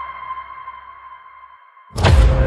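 Trailer sound-design tone: a steady, high, sonar-like ringing tone over a low hum, fading away and cutting off just before the end.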